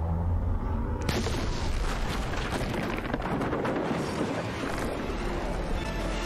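Movie soundtrack effects of a violent scene at sea: a deep rumble, then about a second in a sudden loud crash that runs on as a dense roar of churning water. Orchestral music comes in at the very end.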